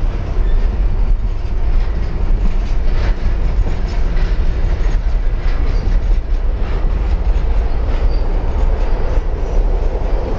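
Freight train cars rolling past at close range: a steady loud rumble with scattered clicks from the wheels on the rails. Among the cars are a lumber-loaded centerbeam flatcar and open-top gondolas.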